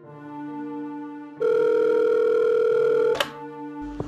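A sustained music chord, then about a second and a half in a loud, steady telephone tone sounds for just under two seconds and cuts off with a sharp click.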